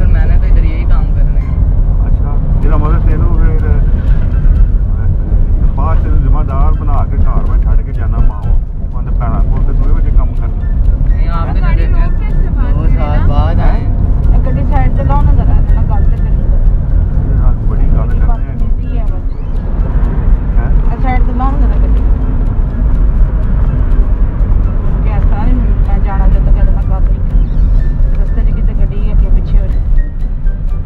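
Steady low rumble of a car on the move, heard from inside the cabin, with voices talking over it on and off.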